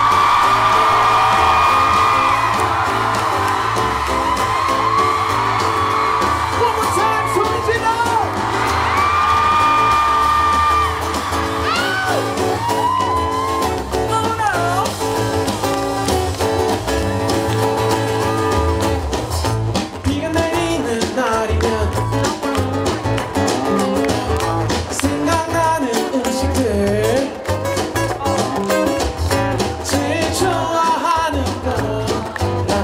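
Live pop band performing with a singer over electric bass, acoustic guitar and drum kit, with long held sung notes near the start and again about a third of the way in.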